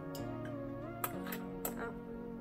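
Soft background music with a gentle melody, with a couple of light clicks from metal enamel pins touched by a magnet, about a second in and again shortly after.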